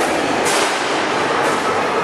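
Steady din of a busy indoor squash hall, with two sharp knocks about a second apart.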